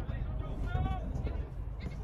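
A player's short, pitched shout or call across the football pitch, heard once a little under a second in, over a constant low rumble.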